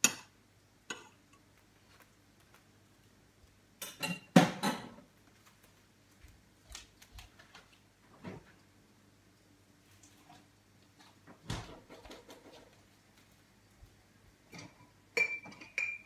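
Kitchenware handling: a knife knocking butter off into a frying pan at the very start, then scattered clinks and knocks of dishes, pots and cutlery, loudest in a quick cluster of knocks about four seconds in.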